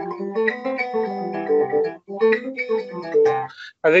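Acoustic guitar playing a C major scale harp-style, each note on a different string with open strings mixed in, so successive notes ring over one another. It comes in two phrases, with a short break about two seconds in.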